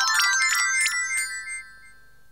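A short twinkly musical sting: a quick run of bright, bell-like electronic notes that dies away about one and a half seconds in.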